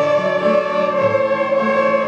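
A group of children's violins playing together, bowing a slow tune of held notes that change about once a second.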